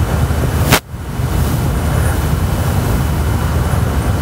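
Steady low rumbling noise on the microphone, broken by a sharp click and a brief dropout just under a second in.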